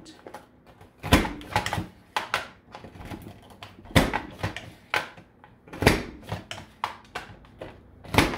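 Plastic clacks and clicks of a Border Maker punch system being worked: the paper guide flipped and snapped into place and the Ancient Key cartridge pressed down through heavy cardstock. Several sharp clacks, the loudest about a second in, at four seconds and near six seconds, with lighter clicks and paper handling between.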